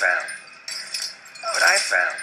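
A short line of dialogue from a film or TV clip, 'But I've found', played twice in a row, with a hissy, metallic-sounding background.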